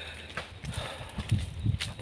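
Soft footsteps on dry, sandy ground: a few light, irregular thumps over a low steady rumble.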